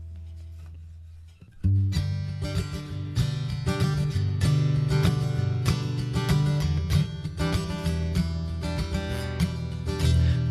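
Acoustic guitar: a held chord fades, then about a second and a half in the guitar begins strumming a song's intro in a steady rhythm.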